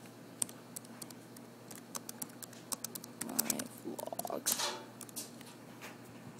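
Irregular clicking of laptop keys being typed. A little past halfway come two short faint voice-like sounds.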